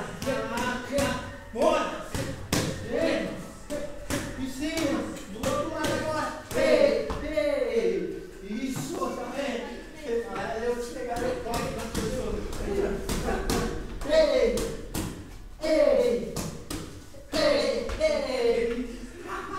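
Punches and kicks landing in Muay Thai sparring: a run of sharp thuds and slaps from gloves and shins striking, about one or two a second, under a person's voice talking almost throughout.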